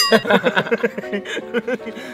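Men laughing and chuckling. A sharp click with a brief ringing tone comes right at the start.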